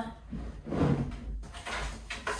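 A folded plastic folding table being tipped upright on a hardwood floor, its plastic scraping and bumping against the boards, loudest a little under a second in.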